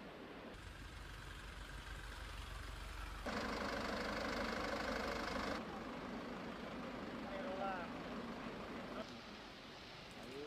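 A steady low engine rumble, like a vehicle idling, that gets louder for a couple of seconds in the middle. Brief distant voices come in later.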